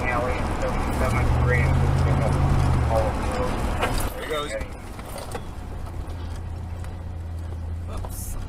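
Low steady drone of a car driving on the road, with voices talking over it in the first half; the sound gets quieter about four seconds in and the drone carries on.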